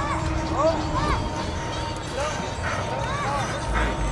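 Background voices of people outdoors, with a string of short, high calls that rise and fall in pitch, repeated throughout.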